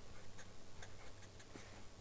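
Faint, irregular light ticks and scratches of a pen writing on paper, over a low steady hum.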